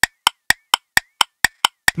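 Clock-ticking sound effect counting down the time to answer a quiz question: sharp, evenly spaced ticks, about four a second.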